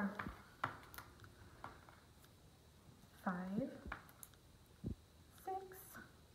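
Small, light clicks and taps of paper cutouts being picked from a plastic tray and set down on a paper worksheet on a table. A woman's voice speaks quietly twice, a little past the middle and near the end.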